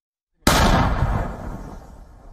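A howitzer firing a single round: a sudden loud blast about half a second in, its rumble dying away over the following second and a half.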